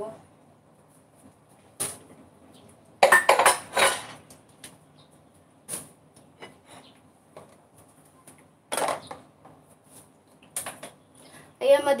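Dishes and cutlery clinking and clattering at a sink as they are washed up. It comes in several separate bursts, the loudest about three seconds in.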